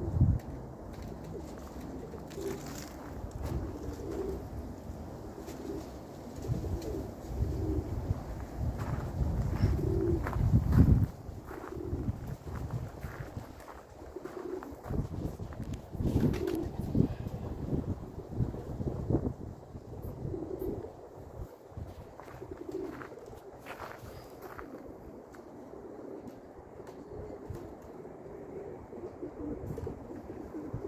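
Domestic pigeons cooing repeatedly, in short low calls, with gusts of wind rumbling on the microphone during the first part.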